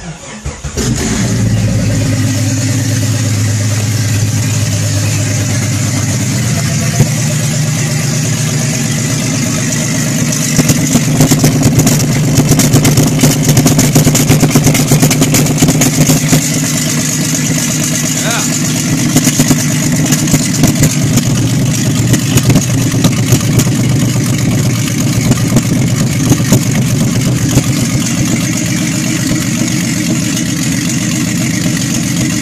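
A 1998 Jeep Cherokee's 4.0-litre inline-six, fitted with a ported and milled 7120 cylinder head and an open Banks Revolver header, cranks briefly and catches within about a second: its first start after the head work. It then runs steadily, growing louder and choppier from about ten seconds in.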